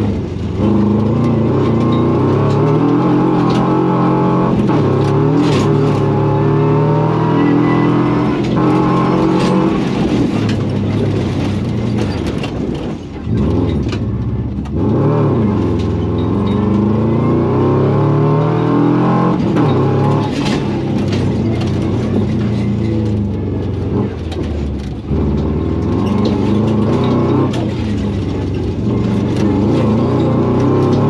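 Rally-prepared Subaru's flat-four engine revving hard, heard from inside the cabin, its pitch climbing and falling again and again as it runs through the gears. There are brief drops in level at lifts or shifts, about thirteen seconds in and again near twenty-five seconds.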